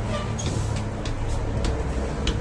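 Footsteps climbing a staircase, a few sharp knocks, over a steady low rumble.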